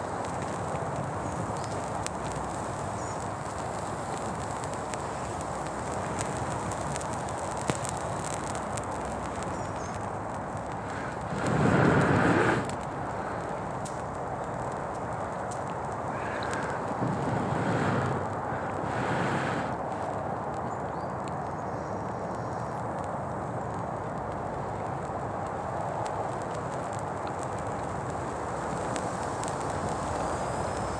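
A hand-held bracken tinder bundle smouldering and catching flame, with a steady hiss and faint crackling. A louder rush of air comes about twelve seconds in, and a few shorter ones a few seconds later.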